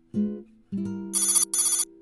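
Plucked guitar-like notes and a held chord, then two short trilling rings like a telephone bell about a second in: an incoming-call ringtone on a smartwatch.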